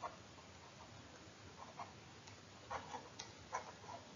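Faint, irregular light ticks and taps of a stylus writing on a tablet screen.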